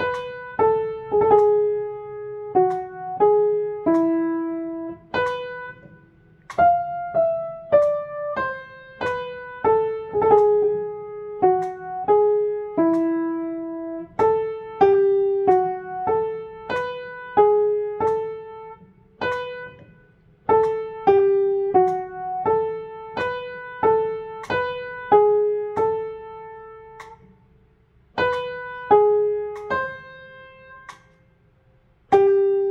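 Upright piano played one-handed, slowly and a little unevenly: a single melodic line of separate notes, each decaying before the next, with a few short pauses in the playing.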